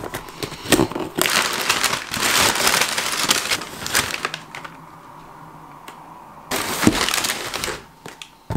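A cardboard box being opened by hand: a few sharp clicks and tears of tape and flaps, then brown paper packing crinkled and rustled in two long stretches, from about a second in to four seconds, and again near the end.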